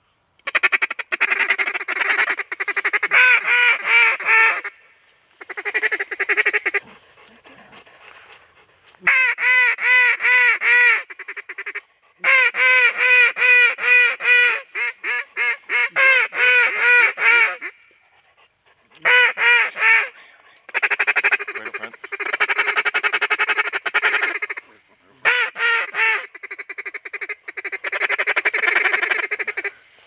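Loud goose honking in quick runs of arched, repeated notes, in bursts of a few seconds with short pauses.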